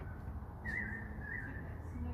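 A high, wavering whistle-like tone lasting about a second, in the middle, over a steady low hum.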